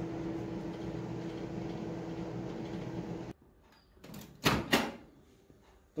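Microwave oven running with a steady hum, which stops abruptly about three seconds in. About a second later there are two sharp clicks as the oven door is unlatched and swung open.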